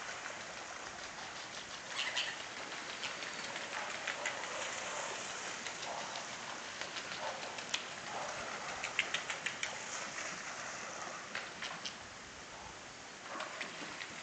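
Outdoor waterside ambience: a steady hiss with scattered faint clicks, a few in quick runs around the middle.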